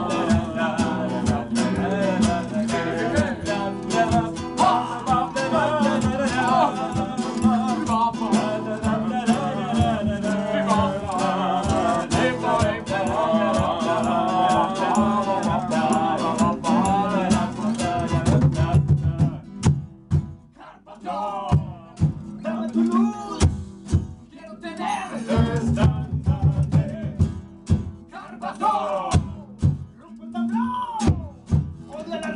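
Live acoustic band performance: two acoustic guitars strummed with sung vocals. About nineteen seconds in, the full strumming drops away to sparser guitar strokes and voice.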